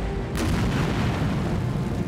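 Large explosion: a deep, rumbling blast, with a second sharp burst about a third of a second in and the rumble continuing, over low background music.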